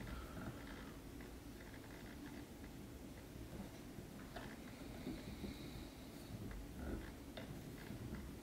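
Faint hand-work sounds of fly tying: quiet rustles and a few small ticks as fingers wrap chenille along the hook held in the vise.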